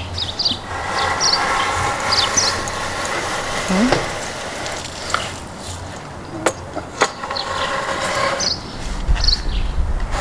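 A steady engine-like hum with a pitched whine for the first half, with short high chirps scattered over it and two sharp knocks half a second apart a little past the middle.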